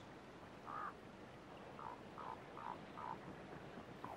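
Elk cows calling faintly: one short chirp a little before a second in, then four more short chirps in a quick series.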